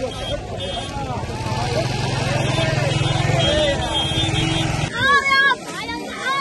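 Many voices talking at once in a crowded street, with a motorcycle engine running close by. The engine grows louder towards the middle and cuts off suddenly about five seconds in, and a high-pitched voice then calls out loudly.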